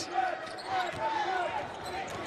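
Basketball game sound from courtside: a ball being dribbled on the hardwood court, with a sharp bounce about a quarter-second in, over arena crowd noise and voices in the background.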